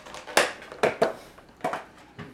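About five sharp clicks and knocks spread across two seconds, from objects being handled.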